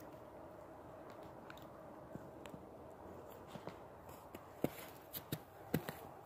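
Faint handling and movement noise: a low steady hiss with scattered small clicks and crunches that grow more frequent in the last couple of seconds.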